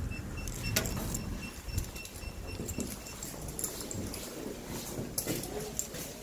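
Eltis intercom door panel beeping a pulsed high tone for about three seconds as an iButton key fob is read, signalling the door lock is released. A sharp click comes under a second in, followed by rattling and knocks of the key fob and door being handled.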